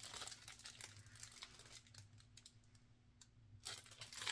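Faint crinkling and rustling of a cellophane-wrapped package being handled, growing louder just before the end.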